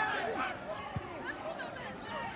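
Several voices talking and calling out at once, overlapping. About halfway through there is one dull thud of a football being kicked.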